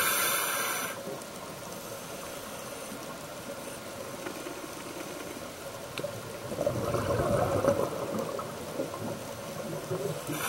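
Scuba diver's breathing heard through the regulator underwater. A hissing inhale ends about a second in, and exhaled bubbles gurgle up for a couple of seconds past the middle.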